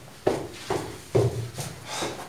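Footsteps walking: four steps about half a second apart.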